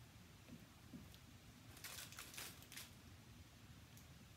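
Very quiet room, with a short run of faint rustles about two seconds in: hands smoothing and pinning a stretchy wig cap over a plastic-wrapped canvas block head.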